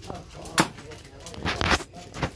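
Cleaver chopping chicken on a round wooden chopping block: one sharp chop about half a second in, then a quick cluster of chops near the end.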